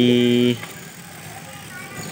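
A man's voice holds one flat hesitation sound that cuts off about half a second in. After it there is only low, steady noise of riding a bicycle along a street.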